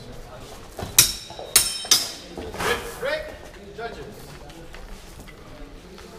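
Steel swords clashing three times in quick succession, each blade-on-blade strike ringing briefly, in a fencing exchange.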